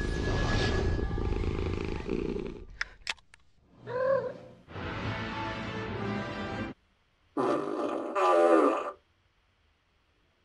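Movie-style soundtrack of music with a big cat growling and roaring, broken by a few sharp clicks about three seconds in. It cuts off suddenly about a second before the end.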